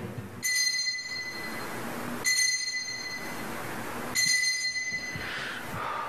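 Altar bell rung three times, about two seconds apart, each a clear high ring that hangs on before the next stroke, marking the elevation of the chalice at the consecration.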